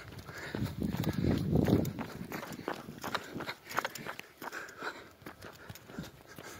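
Running footsteps on a paved path, with the runner's heavy breathing and a louder low rumble on the microphone between about one and two seconds in.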